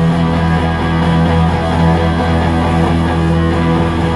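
Live heavy rock trio: distorted electric guitar and bass guitar holding a low, sustained chord, with little drumming.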